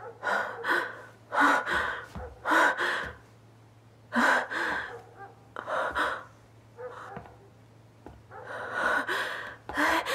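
A woman gasping and breathing hard in short, strained bursts, about a dozen of them at uneven intervals, as she struggles with her wrists bound. A low, steady hum sits underneath.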